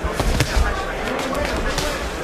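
Boxing gloves landing punches at close range: a quick pair of sharp thuds within the first half second, followed by several lighter knocks.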